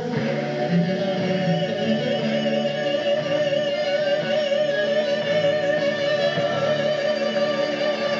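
A woman singing live with a band, holding one long note with a wide vibrato over guitar, bass and drums.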